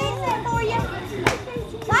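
Chatter of adults and small children talking, with a single sharp click a little over a second in.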